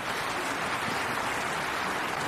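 Audience applauding steadily after the final chord of the concerto.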